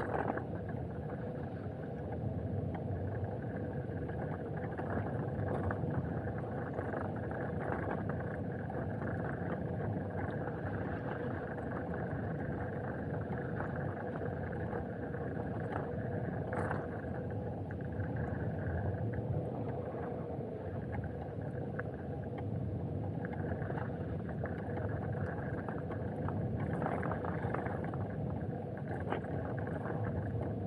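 Tyres of a battery-powered two-wheeler rolling steadily over a packed dirt forest road, a continuous rumble, with a steady thin whine from its electric motor running at constant speed.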